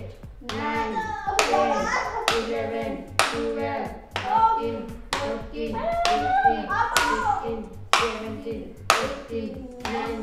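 Sharp smacks of a spoon striking a person's backside over clothing, about one a second, with a voice crying out between the strikes.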